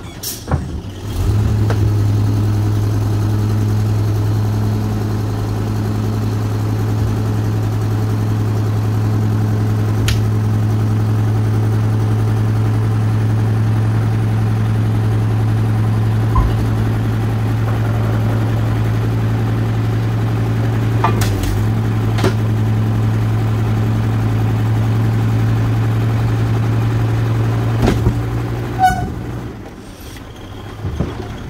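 Hook-lift truck's diesel engine held at a steady raised speed to drive the hydraulic hook arm as it drags a loaded oil palm fruit bin of about seven tonnes up onto the truck bed: a loud, even drone that starts about a second in and falls away near the end as the lift finishes. A few sharp metal knocks from the bin and hook gear come through the drone.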